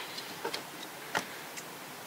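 A few light clicks from a small pair of scissors being handled and opened, the loudest about a second in.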